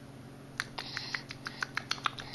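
A quick, irregular run of light clicks and taps, starting about half a second in, several a second.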